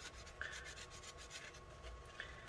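Faint, repeated scratchy strokes of a paper towel wetted with rubbing alcohol, rubbed over a small laptop circuit board to clean off leftover solder flux.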